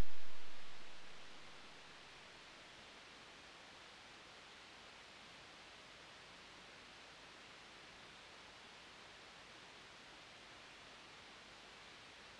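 Faint steady hiss with no hum: the noise floor of an AMT R1 preamp pedal and a Mod Core pedal powered by an isolated Fame DCT200 power supply. A louder sound fades out over the first second and a half.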